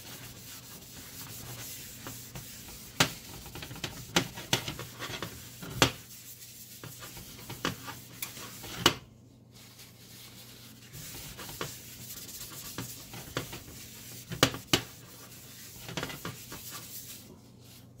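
Paper shop towel rubbed over the inside of a warm cast iron skillet, wiping a very thin coat of oil into the seasoning, with scattered light knocks and clicks.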